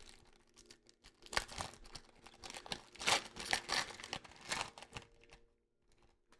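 Foil trading-card pack wrapper being torn open and crinkled by hand, in irregular crackling bursts that die away near the end.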